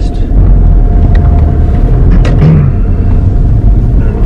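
Steady low road and engine rumble heard from inside a moving car's cabin, with a few faint clicks.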